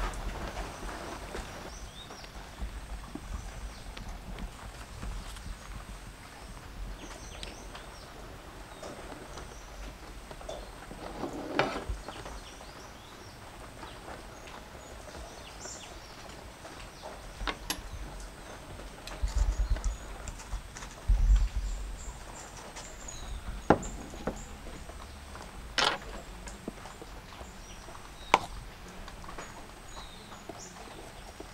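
A metal palette knife spreading whipped cream over a cake, a quiet scraping, with a handful of sharp clicks and taps scattered through as the blade knocks against the cake board. A couple of low rumbles come a little past the middle.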